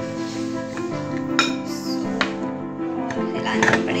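Background music, over which a wire whisk clinks against a glass mixing bowl a few times while cake batter is mixed.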